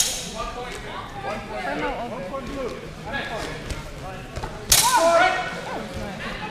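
Swords clashing in a single sharp strike that rings briefly, about three-quarters of the way through, over steady chatter from the hall.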